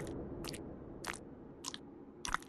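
A series of sharp, crunchy clicks, about two a second and evenly spaced, over a low rumble that fades away.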